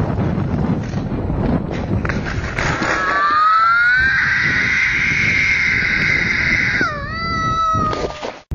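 A child screaming after crashing his bike: a long, high-pitched scream that rises from about three seconds in and is held for about three seconds, then breaks into a second, shorter cry near the end.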